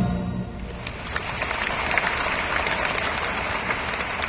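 The last held chord of a choir and orchestra dies away in the first half second. A large audience then applauds steadily from about a second in.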